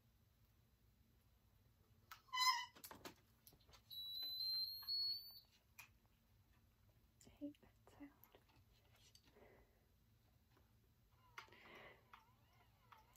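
Electronic beeps from a bedside infusion pump on an IV pole: a short, loud multi-tone beep about two seconds in, then a high, thin tone held for over a second, gliding slightly upward. Faint clicks of buttons and tubing being handled follow.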